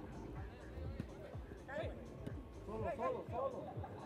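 Faint shouts of players on a football pitch during a match, with quiet background music underneath; the calls come about two seconds in and again around three seconds.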